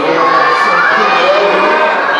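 A large crowd of children shouting and calling out all at once, many voices overlapping without a pause.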